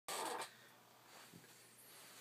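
A person's short, breathy, stifled laugh right at the start, then faint room noise.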